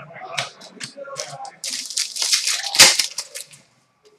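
Trading cards being flipped and shuffled through by hand: a quick run of dry flicks and rustles that thickens in the second half, with one sharper card snap or tap about three quarters of the way through.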